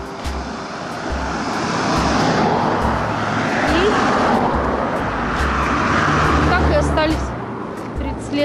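An SUV passing close by on an asphalt road, its tyre and engine noise swelling and then fading, with a second swell of traffic noise from another car a couple of seconds later.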